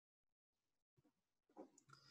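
Near silence: room tone, with a faint brief sound near the end.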